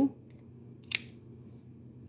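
One sharp snip about a second in: plier-style dog nail clippers cutting off the tip of a dog's nail.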